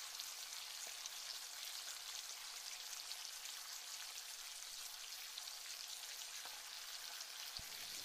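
Masala-marinated fish pieces deep-frying in hot oil in a kadai: a faint, steady sizzle of bubbling oil, with one small click near the end.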